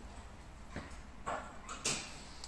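Pilates reformer springs being re-hooked to a lighter load: a few short metallic clicks of the spring hooks against the spring bar, about a second in and again near the end, the last one the loudest.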